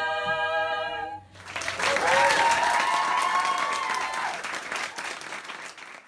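Female barbershop quartet singing a cappella, holding a final close-harmony chord that cuts off cleanly about a second in. Then audience applause with a cheer, dying away near the end.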